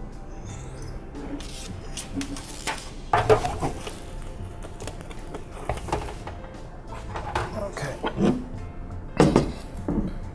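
Light clicks and rattles of a thin steel adjustment cable and its clip being slid into a notch on a sheet-aluminum grow light reflector wing, over steady background music.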